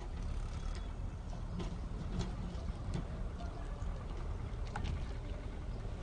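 Wind buffeting the camera microphone outdoors: an uneven low rumble, with a few faint clicks.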